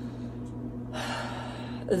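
A woman drawing in a breath, about a second long from halfway through, just before she speaks again. A low steady hum runs underneath.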